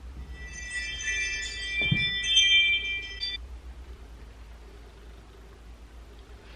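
A cluster of steady, high, chime-like tones sounding together for about three seconds, then cutting off abruptly. A soft low thump comes about two seconds in.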